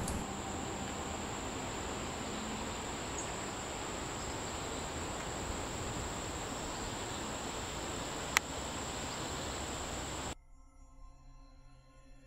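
Steady rushing noise of riding along a paved bike trail, tyre and wind noise on the camera, with a thin, steady, high-pitched buzz of insects over it, and a single sharp click a little after eight seconds in. About ten seconds in the ride sound cuts off abruptly, leaving only faint soft tones.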